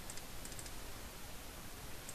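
A few faint computer mouse clicks in the first second, over a steady background hiss.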